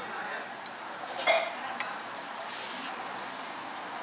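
A metal spoon clinks against a stainless-steel rice bowl and a stone pot as rice is scooped into a pot of gomtang, against steady restaurant room noise. The loudest clink, with a brief ring, comes just over a second in, and a few lighter taps follow.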